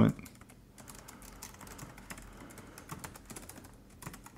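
Typing on a computer keyboard: a quick, quiet run of key clicks.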